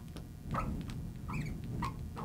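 A marker writing on a glass lightboard, giving several short squeaks as letters are drawn.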